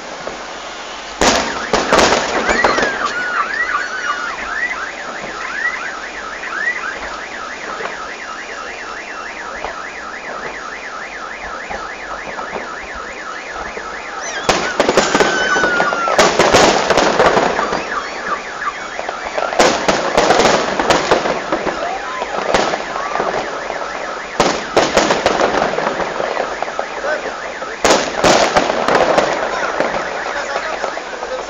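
Aerial fireworks bursting and crackling in volleys: a burst about a second in, then repeated volleys from about halfway through to the end. Between them, a fast, evenly repeating electronic chirp runs for about ten seconds.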